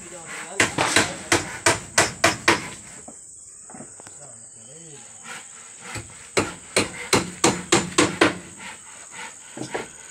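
A hand tool, most likely a hammer, striking a wooden plank in two quick runs of blows about three a second, with a pause between them. A steady high insect trill runs underneath.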